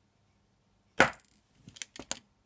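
A single sharp click-knock from a small plastic-and-metal mini tripod being handled, about a second in, followed by a few lighter clicks near the end.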